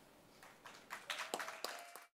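A few faint, scattered hand claps, the sparse beginning of audience applause, starting about half a second in.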